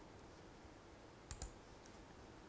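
Near silence: room tone, broken by two quick sharp clicks close together a little past the middle.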